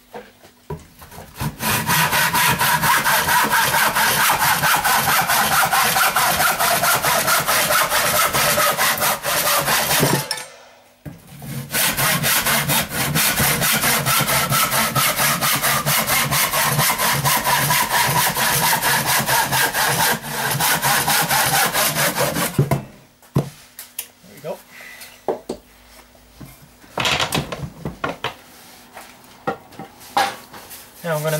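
Hand saw cutting through a wooden batten in quick back-and-forth strokes, in two runs, one for each piece cut off, with a short pause about ten seconds in. The sawing stops a little over twenty seconds in, and a few scattered knocks follow.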